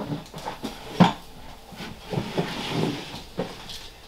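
Plastic snake tub being slid back into a rack, with scattered knocks and scrapes and one sharp knock about a second in.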